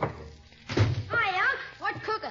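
A door shut in a radio drama's sound effects: one low, heavy thunk a little under a second in, just after a music bridge ends. A man's voice follows.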